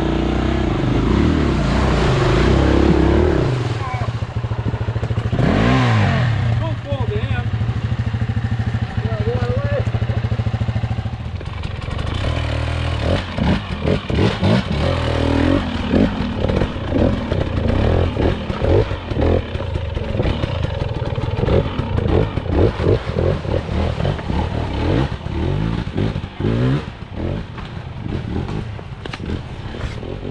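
Two-stroke enduro dirt bike engine running under changing throttle. The revs rise and fall in the first few seconds, then from about twelve seconds in it gives choppy, uneven bursts of throttle.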